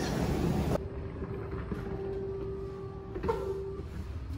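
Treadmill running, a loud steady whirring noise that cuts off abruptly less than a second in. After it comes a quieter low hum with a faint steady tone.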